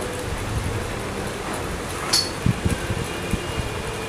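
Steady background hum and hiss of the room in a pause between spoken phrases, with a short high hiss about two seconds in and a few soft low bumps after it.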